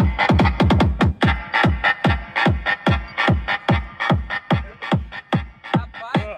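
Electronic music played loud through a Fiat Uno's trunk-mounted car audio system, with deep bass kicks that drop in pitch, several a second.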